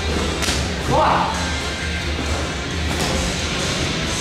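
Boxing gloves smacking during light sparring: two sharp hits, about half a second in and again near three seconds, with a brief louder burst around one second.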